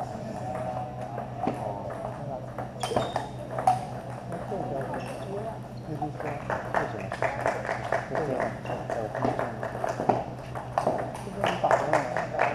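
Background chatter of people talking in a hall, with scattered sharp clicks of table tennis balls hitting tables and paddles, the clicks growing frequent about halfway through, over a steady low hum.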